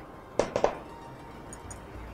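Three quick clinks of glassware, a small glass prep bowl knocked while the minced parsley is tipped out, about half a second in.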